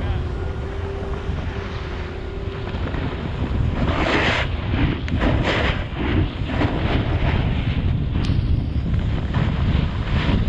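Wind rumbling on the camera microphone while riding. From about four seconds in come repeated hissing scrapes of snowboard edges sliding across packed snow through turns.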